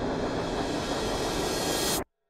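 A steady rushing hiss of noise from a music video's opening, growing brighter toward the end and then cutting off suddenly.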